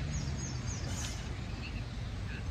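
Steady outdoor background noise with a low hum, and a few short, high bird chirps near the start and again near the end.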